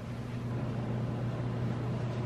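A steady low hum with a faint even hiss, no distinct events.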